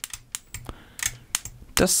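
Sharp crackling snaps of electrical arcing as the output leads of a Wanptek KPS305D switch-mode bench power supply are repeatedly shorted together at full voltage with the current limit at 5 A. There are about five irregular snaps.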